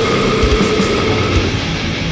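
Instrumental passage of a death-doom metal song: heavily distorted guitars hold a chord over separate bass drum hits, and the held chord gives way to a new figure about one and a half seconds in.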